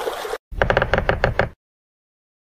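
Editing sound effects for a screen transition: a short whoosh, then about a second of rapid clicks, roughly ten a second, over a low rumble.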